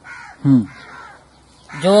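A bird cawing faintly, and a man's short vocal sound falling in pitch about half a second in, during a pause in speech.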